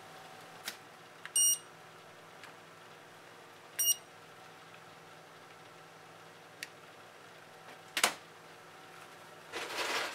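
Two short electronic beeps from a handheld infrared thermometer taking readings of the reaction temperature, about two and a half seconds apart, the first slightly longer. A sharp click about eight seconds in and a patter of small clicks near the end, over a low steady hum.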